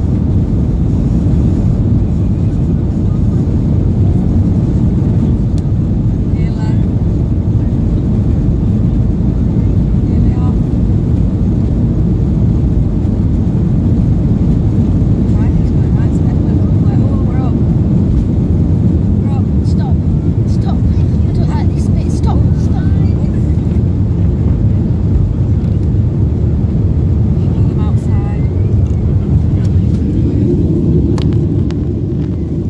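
Steady, loud rumble of jet engines and rushing air inside the cabin of a Ryanair Boeing 737 at takeoff power during takeoff and climb-out.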